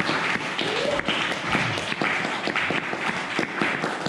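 Audience applauding, a dense patter of many hand claps.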